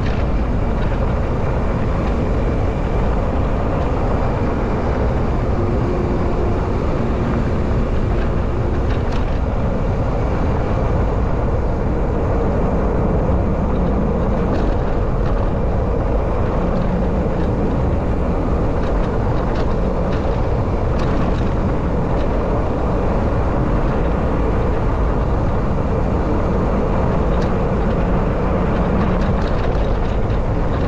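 Steady rush of wind on the microphone mixed with the fat tyres of a Foes E-Ticket full-suspension bike rolling down a dirt road, with a few faint clicks from the bike and gravel.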